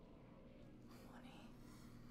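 Near silence: a faint low hum, with a brief faint voice about a second in.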